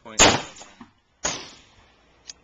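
Two loud gunshots about a second apart, each with a short ringing tail, from a nearby lane at a shooting range. The Hi-Point carbine on the bench is not firing.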